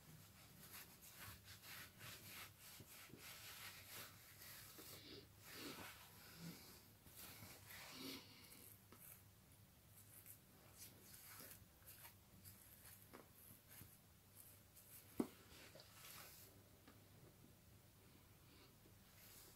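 Faint, irregular rustling of fingers rubbing through twisted locs and over the scalp, with one short sharp click about three seconds before the end.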